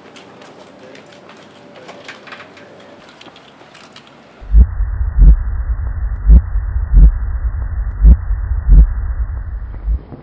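Faint outdoor ambience, then a few seconds in a muffled, deep heartbeat sound effect starts over a low rumble: three pairs of heavy thumps, evenly spaced.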